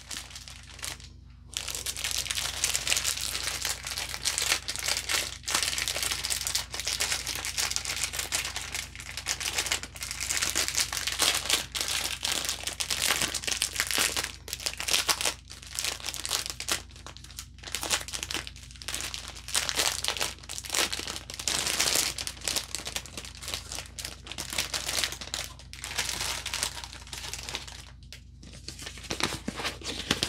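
Clear plastic packaging holding small bags of diamond-painting drills crinkling and crackling as it is opened and handled, in an irregular run of noise that starts about a second and a half in and goes on with only brief pauses.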